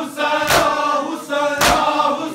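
A group of men chanting a noha together, with hands striking bare chests in unison in matam about once a second; two strikes fall in these two seconds.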